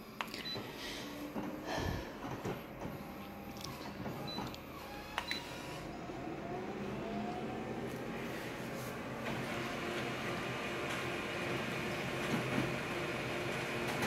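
Colour photocopier making a copy: a few clicks early on, then its motors whir up about halfway through and settle into a steady running noise that grows fuller toward the end.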